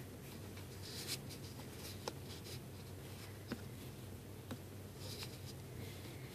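Faint scratching and a few small clicks, about one a second, of fingers handling rubber loom bands on the plastic pegs of a Rainbow Loom, over a low steady hum.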